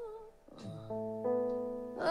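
Live pop-ballad band music: a female singer's held note tails off, then sustained keyboard chords come in, the notes stacking up over about a second above a low bass note.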